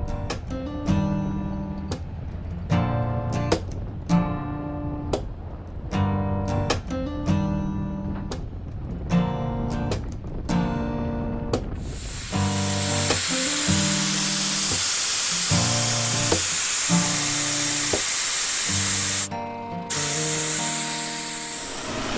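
Background music with a steady beat. About halfway through, a loud steady hiss of air escaping from a 4WD tyre being let down joins the music and stays, broken once briefly near the end.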